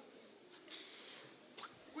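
Faint sound of rubber balloons being blown up by mouth: a breathy rush of air lasting about half a second, near the middle.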